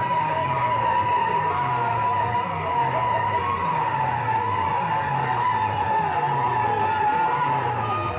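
Music played loudly through banks of horn loudspeakers: one long high tone that slowly sinks in pitch, over a low beat that repeats about twice a second.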